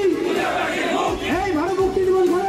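A large crowd of men chanting together in unison, their voices rising and falling in a wavering line.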